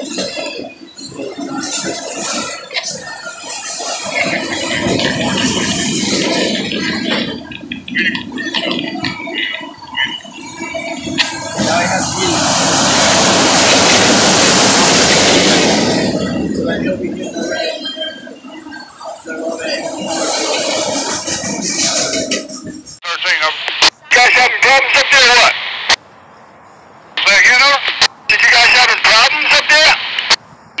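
Freight cars of a passing train rolling by a grade crossing in a continuous noise that swells in the middle. About two-thirds of the way through, this gives way to choppy railroad two-way radio chatter between train crews, clipped on and off with each transmission.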